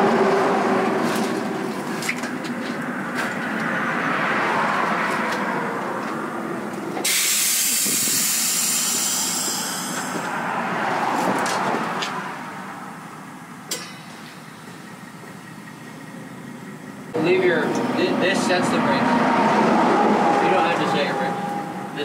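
Compressed air hissing from a semi-trailer's air system, a bright hiss lasting about three seconds starting about seven seconds in, over steady truck and work noise. The noise dips for a few seconds, then rises again suddenly near the end.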